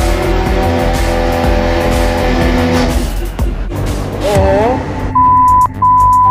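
Mercedes-AMG CLA 45's turbocharged 2.0-litre four-cylinder held at high revs under load on a chassis dyno, under background music; the run ends about three seconds in. Near the end come a short wavering sound effect and two steady electronic beeps.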